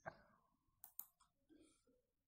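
Faint computer mouse clicks: one click, then a quick pair about a second in, as code is selected and copied from a right-click menu.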